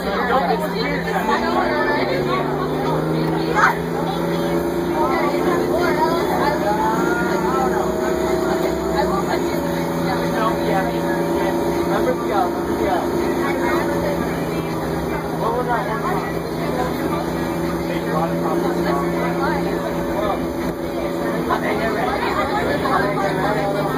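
Crown Supercoach Series II bus engine running under way. It climbs in pitch over the first seconds, drops once about nine seconds in, then holds a steady drone, heard from inside the bus.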